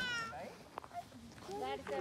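A short, high-pitched cry right at the start that slides up and then holds briefly, followed by voices chatting near the end.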